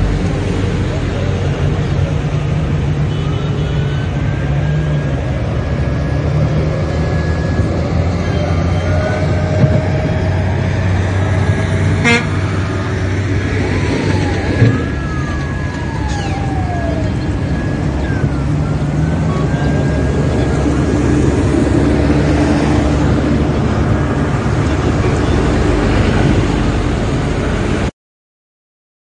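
Busy road traffic: vehicle engines running, with car horns honking, a siren-like wail that rises and falls, and people's voices in the crowd.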